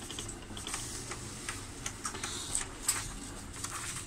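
Epson L120 inkjet printer printing and feeding out a nozzle check page: a steady motor hum with scattered ticks and clicks from the print mechanism.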